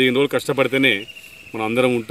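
A man talking, with a pause about halfway through where a steady, high-pitched cricket trill carries on alone.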